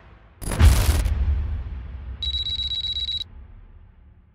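Promo sound-design sting: a deep boom hit about half a second in that rings away, then a steady high electronic tone lasting about a second before it cuts off.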